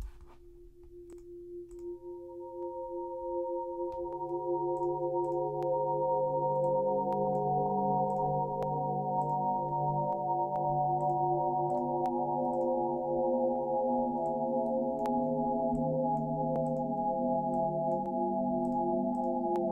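Ableton Wavetable synth playing a droning pad through reverb. Sustained notes enter one after another over the first few seconds and build into a steady layered chord, with pitched-up and pitched-down copies of the notes added by the MIDI Multiplier device. Faint clicks come now and then.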